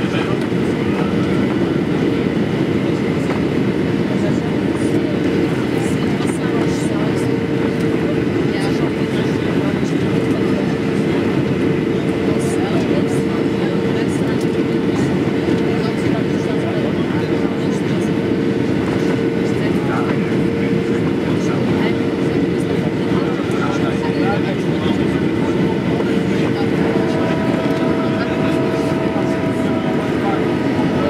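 Steady cabin noise of a Boeing 737-800 in flight, heard from a window seat: an even rumble of engines and airflow with a steady mid-pitched tone running through it. A few faint higher tones join near the end.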